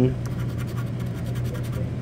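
A scratch-off lottery ticket being scratched with a pencil: quick, light rubbing strokes over the coating, with a steady low hum underneath.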